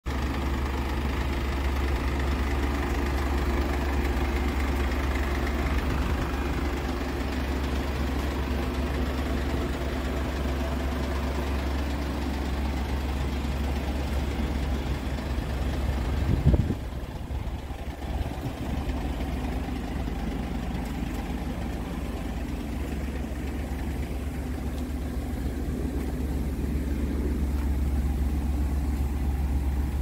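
Mercedes-Benz Sprinter 514 CDI's four-cylinder diesel engine idling steadily, with one brief thump about sixteen seconds in.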